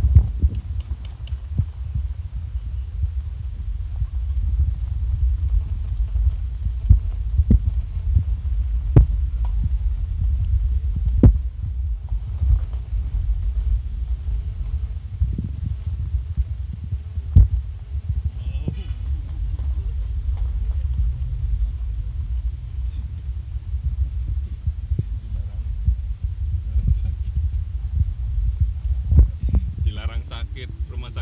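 Low, steady rumble inside a car's cabin as it drives over a rough gravel road, with a few sharp knocks from bumps in the road.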